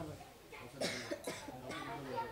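A person coughing a few short times, faint, about a second in.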